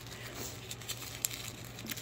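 Faint rustling and crinkling of a small blue pouch being handled and opened, with a light click a little past the middle.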